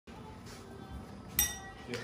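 A sharp clink of glass a little past halfway through, ringing briefly as it fades, then a softer second clink right at the end.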